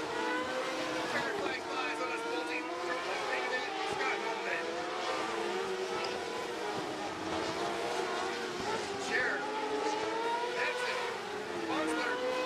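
Several winged sprint car engines racing round a dirt oval, their engine notes rising and falling as the cars pass and circle the track.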